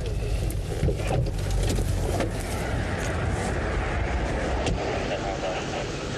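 Car driving, with a steady low rumble of road and engine noise heard inside the cabin and faint indistinct voices under it.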